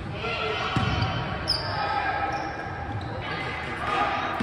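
Volleyball rally in a large gym: the ball struck with a thud or two, among indistinct players' and spectators' voices, all echoing in the hall.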